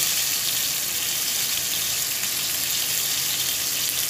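Floured fish fillets shallow-frying in hot oil in a frying pan: a steady, even sizzle.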